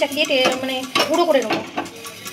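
Steel kitchen utensils clinking and clattering in a series of sharp knocks, with a woman's voice over them.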